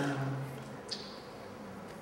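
Quiet lecture-hall room noise with a low steady hum that fades after the first moment. A single short sharp click comes about a second in.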